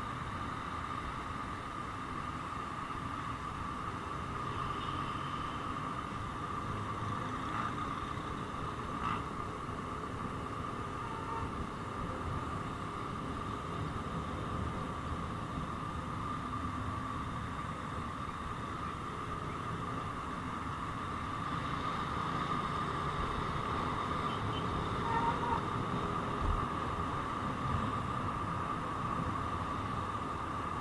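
Steady vehicle and wind noise from riding a motorcycle through city traffic, with a constant high hum; it gets a little louder about two-thirds of the way through.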